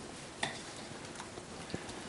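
Faint sound of a spatula stirring thick, pancake-like fritter batter in a bowl, with a light knock against the bowl about half a second in and a small click near the end.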